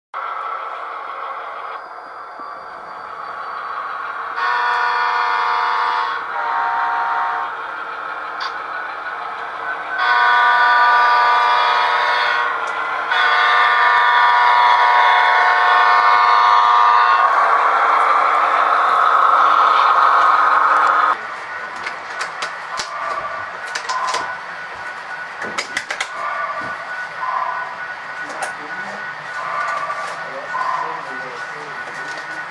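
Model diesel locomotive's sound unit sounding a multi-chime air horn in four blasts, the last two long, followed by a few seconds of rushing noise and then scattered light clicks.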